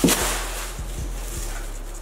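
Thin plastic grocery bag being flicked open with a sharp snap at the start, then rustling and crinkling as it is held open.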